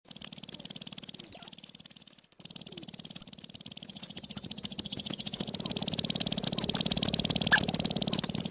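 Male sharp-tailed grouse dancing on a lek: a rapid, even rattle of stamping feet and shaking tail feathers that grows louder, with a brief break a little over two seconds in and a sharp click near the end.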